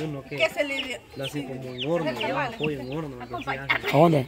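Chickens clucking, with short repeated calls and a few high chirps.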